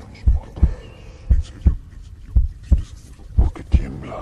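Heartbeat sound effect: pairs of deep thumps, lub-dub, about one pair a second, four beats in all.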